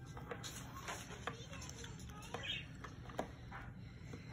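Small plastic doll accessories being handled, giving a few light, scattered clicks and taps, over a steady low hum.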